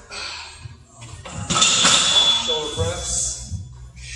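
Loaded barbell clanking and scraping against the steel rack as it is set down and handed over, with a high metallic ring that lasts about two seconds; low voices alongside.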